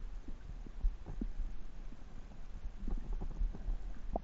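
Muffled underwater sound picked up by an action camera in its waterproof housing: a low, steady rumble with dull irregular thumps and a few short higher blips.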